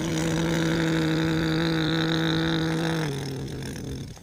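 Electronic engine sound effect: a steady, evenly pitched motor hum that steps down slightly in pitch and level about three seconds in.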